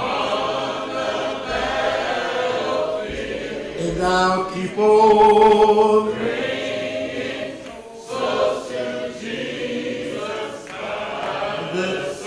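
Unaccompanied hymn singing: voices hold long notes in slow phrases, with no instruments.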